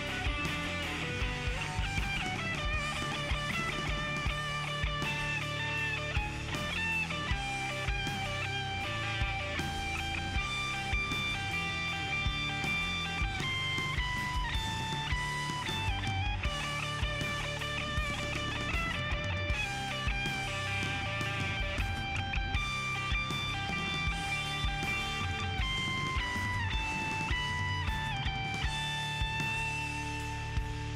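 Solid-body electric guitar played live through an amplifier, an instrumental passage of held melodic notes that step up and down in pitch over a steady low backing.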